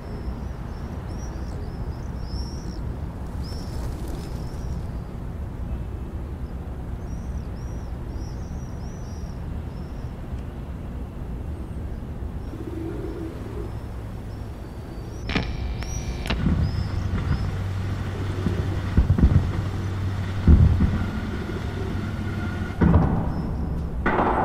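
Birds chirping over a steady low rumble, like an outdoor field recording. About 15 s in, a deeper steady hum joins, with several heavy low thuds.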